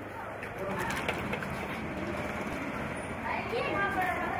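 Busy market background: several people talking at once, no one voice clear, over a steady general hubbub.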